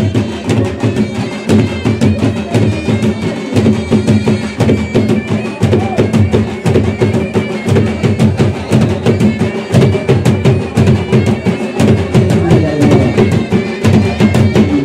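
Traditional drum band: dhol drums beaten fast with sticks in a steady driving rhythm, under a sustained, wavering melody from a reed wind instrument.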